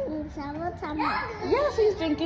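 A toddler's high-pitched voice, chattering and vocalizing without clear words.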